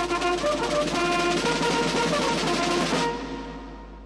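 Military band playing brass and drums, with held, changing notes over the percussion, that breaks off about three seconds in and rings away.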